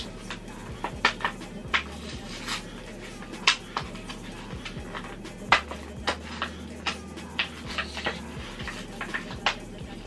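Plastic blister pack being peeled and pried off its cardboard backing card: a string of irregular sharp plastic crackles and clicks.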